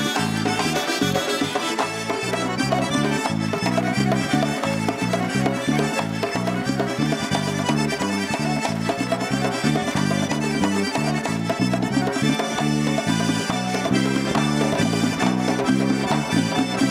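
Adjarian (acharuli) Georgian folk dance music, with an accordion lead over a fast, steady, driving beat.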